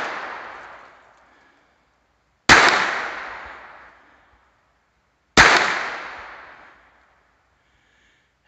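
Ruger LCP II .22 Long Rifle pocket pistol firing two single shots about three seconds apart. Each shot's echo dies away over about a second and a half. The echo of a shot just before fades out at the start.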